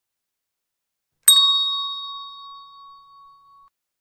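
A single bell ding about a second in, ringing out and fading away over about two and a half seconds.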